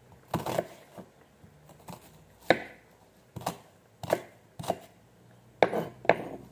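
Kitchen knife slicing through an onion and knocking on a wooden cutting board: about eight sharp knocks at an uneven pace.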